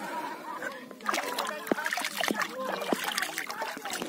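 A hand splashing and stirring shallow, clear lake water over rocks. The splashing starts about a second in as a run of short, irregular splashes.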